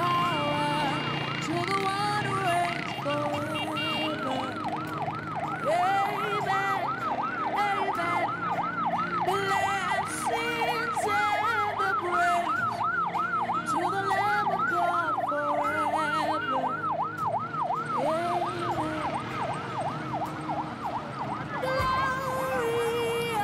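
Ambulance siren in a fast up-and-down yelp, about two to three sweeps a second, with music underneath.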